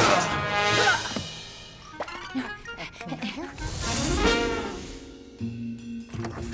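Cartoon soundtrack music with comic sound effects: a loud hit at the start, then tones that glide up and down around four seconds in.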